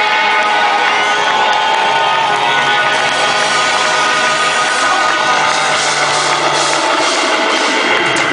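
A rock band playing live, with electric guitars and drum kit, loud and steady, recorded from the audience.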